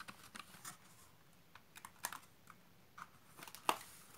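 Faint, scattered light clicks and rustles of a paperboard product box being handled and its lid closed, with one sharper tap a little before the end.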